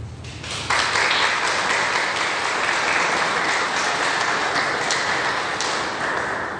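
Audience applauding, starting just under a second in and tailing off near the end.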